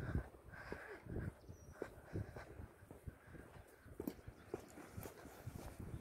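Faint footsteps of a person walking outdoors, irregular soft steps.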